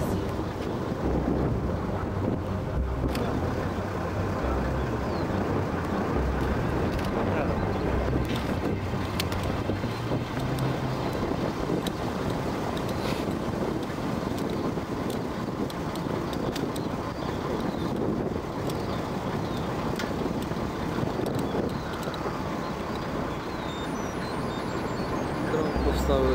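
Wind noise on the microphone, a steady low rumble.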